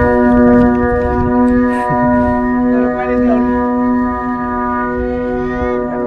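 The flute rack of a 3-metre Vietnamese flute kite (diều sáo) sounding as the kite climbs on the tow: several flutes hold one loud, steady organ-like chord of many notes at once.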